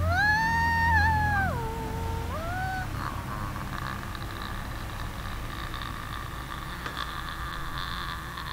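Free improvised music: a sliding wailing pitch that rises, holds, drops and rises again, like a cat's caterwaul, over a low steady drone. About three seconds in it gives way to a sustained airy, noisy texture.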